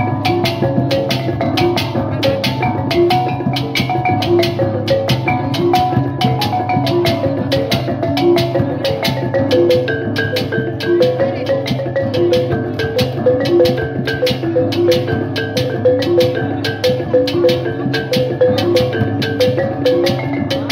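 Kulintang ensemble playing: a row of small bossed gongs picks out a fast, stepping melody over a quick, even beat of drum and larger gong strokes.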